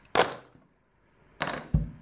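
Wooden clothespins clicking against each other and knocking on a wooden tabletop as a hand picks through them: one sharp click just after the start, then a cluster of knocks with a dull thump a little later.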